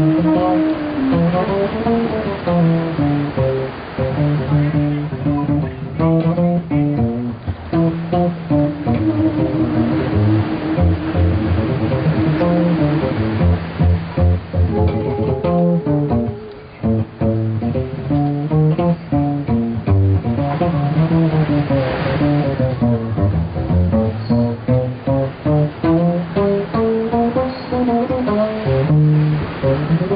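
Upright double bass played pizzicato in a jazz blues, a continuous line of plucked notes. About a third of the way in it plays a run of quick repeated notes.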